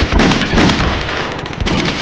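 Rapid pistol gunfire from several guns: many shots in quick succession, overlapping, loudest in the first half-second or so.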